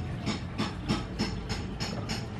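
A regular series of sharp, high-pitched clicks, about three a second, over a steady low background hum.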